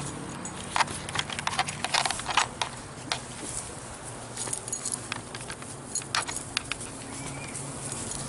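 Irregular sharp clicks and light rustling from two leashed dogs moving about and sniffing on grass: collar tags and leash hardware jingling as the leash is handled. A low steady hum runs behind.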